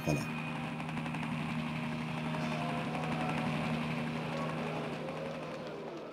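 A steady mechanical drone with a low hum, swelling slightly in the middle and fading toward the end.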